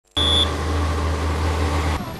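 Road traffic noise at a busy junction with a steady heavy low rumble, and a short high-pitched tone near the start.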